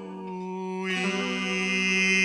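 A man's voice holds one long sung note, which swells and takes on vibrato about halfway through, over a softly played nylon-string classical guitar.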